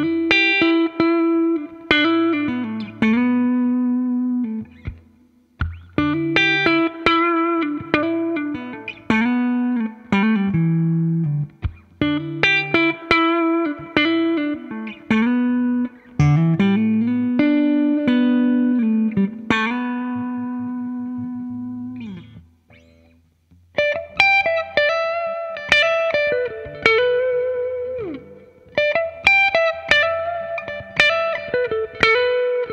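2008 Gibson Les Paul Standard Plus with Burstbucker humbuckers, played through a Fender '65 Reissue Twin Reverb amp: single-note lead phrases with string bends, broken by short pauses, the longest about three quarters of the way through.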